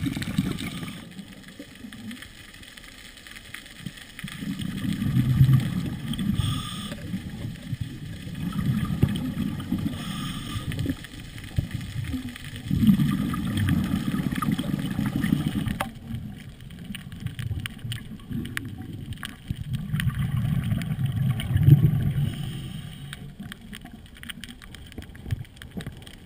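Muffled low rumbling of water heard through an underwater camera housing, swelling and fading every few seconds.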